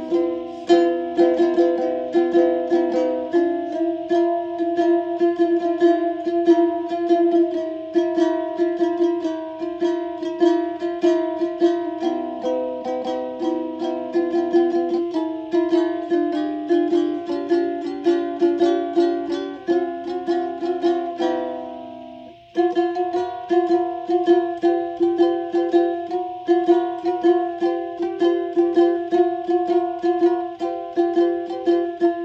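Plucked string instrument music: a steady stream of quick picked notes over ringing chords, with a brief fade and pause about twenty-two seconds in before the playing starts again.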